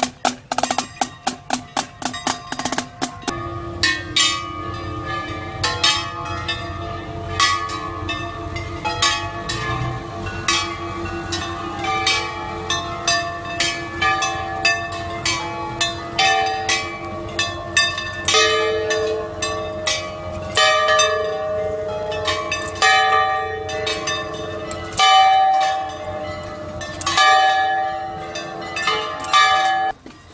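A marching drumline's drums playing rapid strokes for the first three seconds, then parade band music: sustained melody notes over regular drum beats.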